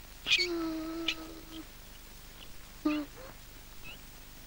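A drawn-out call held on one steady pitch for over a second, then a shorter call about three seconds in, each with a faint click.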